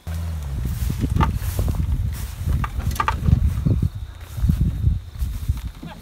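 A Chevy Blazer dragged through tall grass and brush on a tow strap: a low rumble with many sharp crackles and snaps of breaking vegetation.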